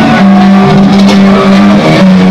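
A thrash metal band playing live and very loud, with distorted electric guitars holding a run of sustained notes that change pitch every half second or so.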